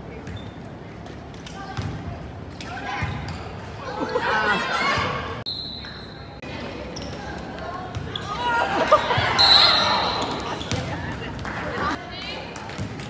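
Sounds of a volleyball game in a gymnasium: voices calling and cheering, thuds of the ball bouncing and being hit, and a steady referee's whistle a little past the middle, with a shorter one later.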